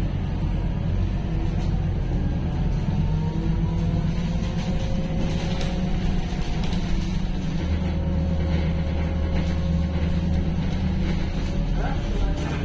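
Steady low rumble of a city bus in motion, heard from inside the cabin, with music playing over it.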